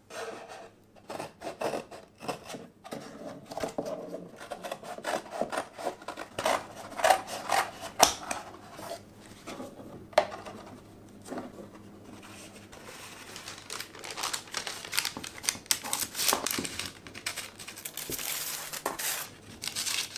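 Scissors cutting through a paper milk carton, with sharp snips and handling clicks. From about two-thirds of the way in, this gives way to denser snipping and rustling as scissors cut a sheet of parchment (cooking) paper.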